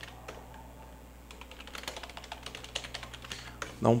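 Computer keyboard being typed on: a few separate key clicks, then a quick run of keystrokes through the second half as a command is entered. A faint steady low hum runs underneath.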